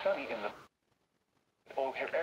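A faint voice broadcast from a NOAA weather radio's speaker, tuned to 162.400 MHz. It cuts off abruptly about two-thirds of a second in to a second of dead silence, then sound returns near the end.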